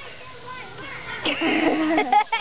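A group of young girls' voices chattering and laughing together, faint at first and growing louder about a second in.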